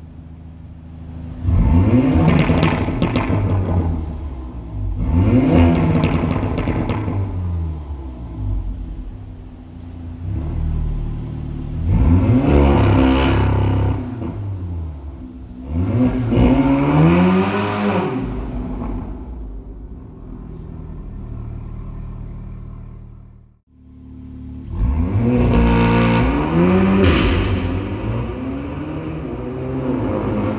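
A Stage 2 tuned 2019 Audi S3's turbocharged 2.0-litre four-cylinder running through a Milltek non-resonated exhaust in dynamic mode, accelerating hard in a tunnel. There are about five loud bursts, each rising then falling in pitch, with a brief break about three-quarters of the way through.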